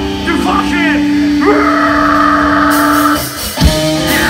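Rock band playing live: held electric guitar notes ring out with a sliding pitch about a second in, then after a short dip the full band comes in hard with drums and cymbals near the end.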